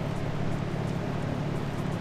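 A steady low hum of background machinery, with no wrench clicks or knocks.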